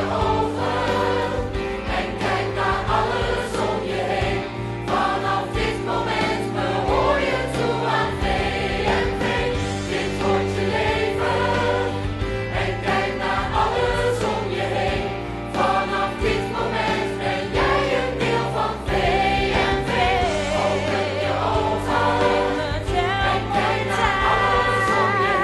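A musical-theatre ensemble singing together as a choir over instrumental accompaniment, continuous and full throughout.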